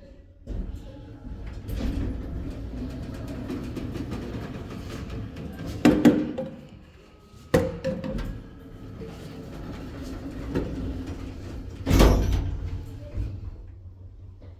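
Georgi Aufzugtechnik passenger lift running with a steady rumble and hum. Over it come a loud clunk about six seconds in, a sharp knock about a second and a half later, and a heavy thud near the end from its sliding car doors.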